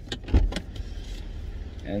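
A few short clicks and knocks of personal belongings being picked up and handled inside a parked car, the loudest about a third of a second in, over a low steady hum.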